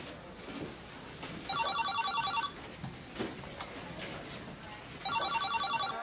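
A telephone ringing twice with a fast trilling ring. Each ring lasts about a second, and the rings come about three and a half seconds apart.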